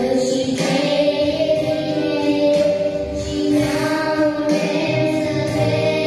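A children's choir singing a song, one girl's voice carried on a handheld microphone, the sustained sung notes continuing without pause.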